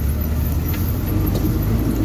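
The engine of an old Jeep running steadily as it is driven, heard from the driver's seat as a dense low rumble with road noise.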